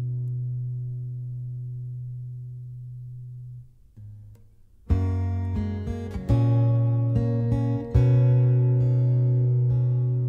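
Acoustic guitar played alone: a chord rings out and slowly fades, a short pause falls, then strummed chords start again about five seconds in, each left to ring.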